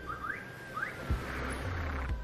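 Emergency vehicle siren wailing, its pitch slowly falling, with a few short rising chirps about half a second apart, over a low rumble.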